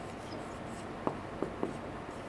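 Marker pen writing on a whiteboard: faint strokes, with three short ticks of the pen about a second in.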